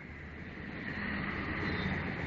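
Steady background noise with a faint high whine and a low hum, swelling over about the first second and then holding steady.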